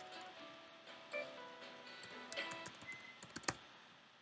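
Computer keyboard keys typed in a short run of clicks over the second half, with the loudest click near the end, over soft background music made of held tones.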